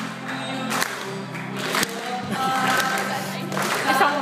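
Acoustic guitar strumming chords in a solo song, with a male voice singing again in the second half.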